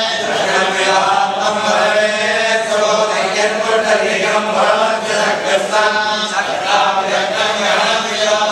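Men's voices chanting a religious recitation together, continuous and steady in pitch with slow rises and falls.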